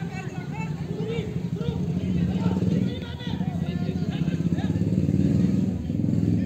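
Football players calling and shouting across the pitch over a steady low rumble.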